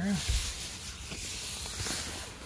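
Hands rubbing and smoothing a Cordura fabric seat cover over a rear seat: a continuous, hissy rustle of cloth.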